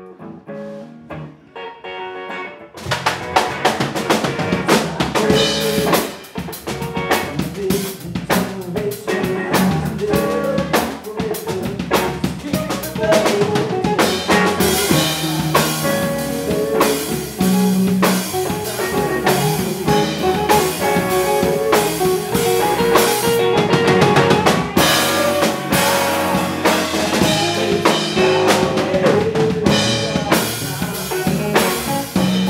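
Live rock band music: electric guitar plays alone at first, then the drum kit, bass and second guitar come in together about three seconds in, and the full band plays on loudly.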